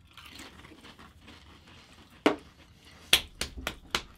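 Pringles chips crunching as they are bitten and chewed: one sharp crunch about two seconds in, then a quick run of four or five near the end.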